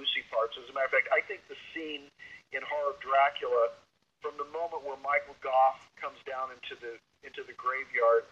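Speech only: a man talking steadily, with a short pause about four seconds in and another near the end.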